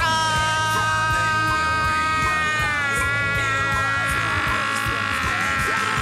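A singer holds one long note over a heavy rock backing track with drums and bass; the note dips slightly in pitch about halfway through.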